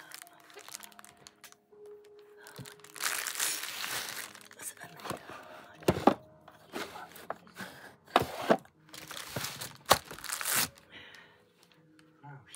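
Packaging being unwrapped by hand: irregular bursts of crinkling and tearing, the longest about three seconds in and more around eight to ten seconds, with a few sharp cracks. A television plays faintly underneath.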